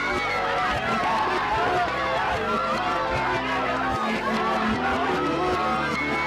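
Voices played backwards, talking or shouting over background music that also runs in reverse.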